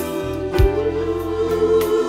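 Instrumental backing track of a Brazilian gospel song: held chords over a steady bass line, with the main held note stepping up slightly and a low hit about half a second in.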